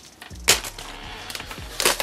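Plastic packaging wrap crackling as it is handled and pulled open, with a sharp crackle about half a second in and more crinkling near the end.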